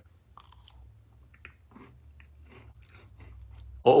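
A person chewing a mouthful of moist chocolate cake with the mouth closed: faint, irregular soft clicks of the chewing.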